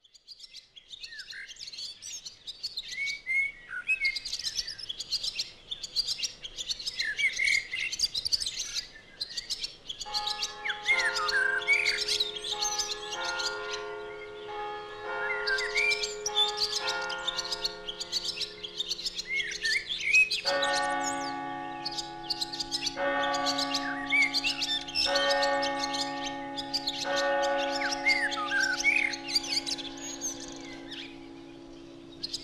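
Birds chirping and twittering throughout. Slow held chords join about a third of the way in, changing every couple of seconds, and a deeper chord layer adds in about two-thirds of the way through.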